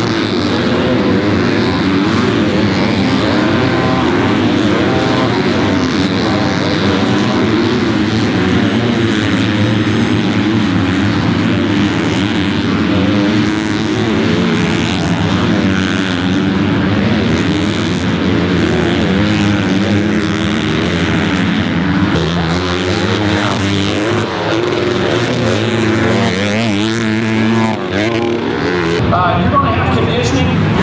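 Several motocross bikes racing on the track, their engines revving up and falling back over and over, so that their sounds overlap into one continuous, loud mix.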